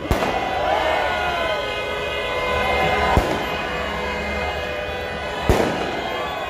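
Fireworks going off overhead: three sharp bangs, one at the start, one about three seconds in and one near the end, over the steady noise of a large crowd.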